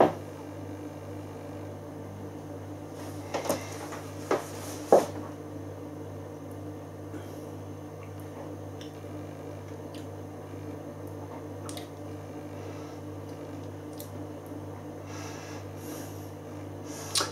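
A man tasting beer: a few short sipping, swallowing and glass sounds about three to five seconds in, over a steady low electrical hum.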